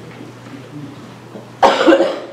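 A man coughing once, loud and close, near the end, after a stretch of quiet room tone.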